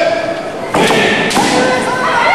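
Kendo fencers shouting kiai and striking with bamboo shinai: a sudden loud crack and shouts about three-quarters of a second in, then a second strike about half a second later.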